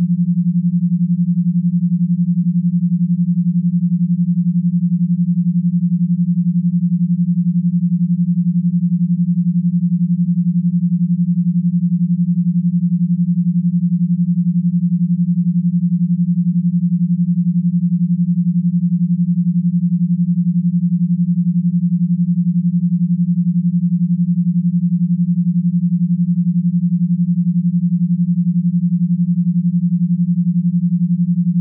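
An 11 Hz alpha binaural beat: two pure sine tones at a low pitch, one in each ear and 11 Hz apart, held steady as a low hum with a fast, even pulse.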